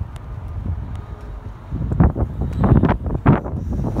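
Wind buffeting a phone's microphone in the open air, a low rumble that turns into strong, irregular gusts about halfway through.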